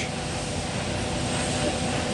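Steady rushing hiss with a faint steady hum of a few tones from Space Shuttle Discovery on the launch pad, its auxiliary power units running in the last minutes of the countdown.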